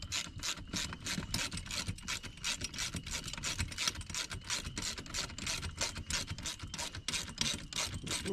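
A wrench turning a bolt on a boat-seat pedestal mount: a quick, even run of scratchy metal clicks, several a second, as the bolt is snugged down.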